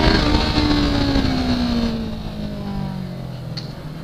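2018 Yamaha R3's 321 cc parallel-twin engine running on the move, its revs falling steadily so that the engine note sinks in pitch and grows quieter over about three seconds, as when the rider rolls off the throttle.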